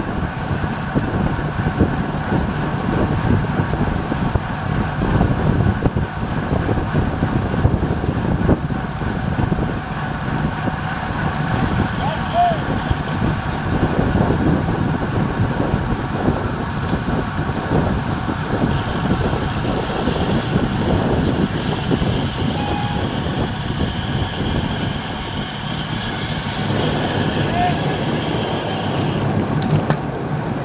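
Steady wind rush on the microphone and the hum of tyres on asphalt from a road bike ridden in a group at about 22 mph. A higher hiss joins for about the last third.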